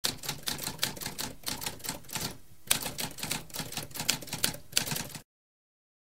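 Typewriter keys clacking in a rapid run of strikes, with a brief pause about two and a half seconds in, then stopping about five seconds in.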